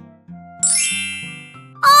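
A bright chime sound effect rings once about half a second in and fades away over about a second, marking that an oval has been found. Soft background music plays beneath it.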